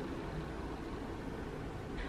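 Steady background noise: room tone with a low rumble and hiss, and no distinct events.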